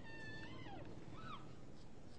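A man's faint, high squeaky voice making a short animal-like call in a kangaroo impression: a held note that slides down, then a brief chirp about a second later.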